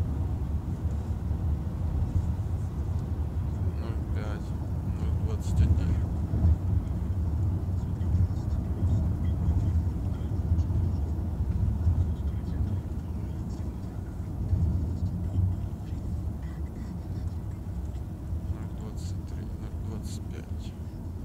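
Road and engine noise inside a moving car's cabin: a steady low rumble, with a few short clicks or knocks about four to six seconds in and again near the end.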